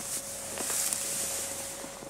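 Dry hay rustling as gloved hands pull and rummage in a bale, a steady hiss that dies away near the end.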